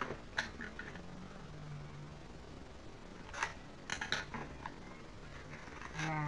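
Pastry packaging being handled: crisp crackles of a wrapper and box, one about half a second in and a cluster of several between three and a half and four and a half seconds in.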